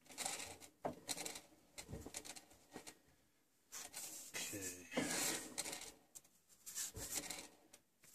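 Hand turning a 1962 BSA A10 Super Rocket crankshaft between lathe centres to check flywheel runout: faint, irregular rubbing and knocking handling noises of skin and fingers on the metal flywheels, with a brief low voice sound about four and a half seconds in.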